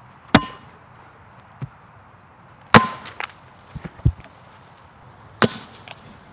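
Plastic soda bottle slammed bottom-down onto a hard slab three times, about two and a half seconds apart, each a sharp smack with a brief ring and a few lighter knocks between. These are attempts to jolt the Mentos loose inside a Diet Coke bottle rocket, and it fails to launch.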